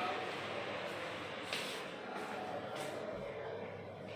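Indistinct voices over room noise, with a short sharp click about a second and a half in and a fainter one near three seconds.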